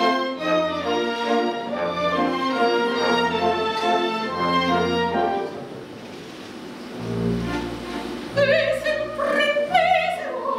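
String orchestra playing an accompaniment with a regular pulsing bass, thinning out about five and a half seconds in. A low chord follows, and an operatic soprano enters with wide vibrato near the end.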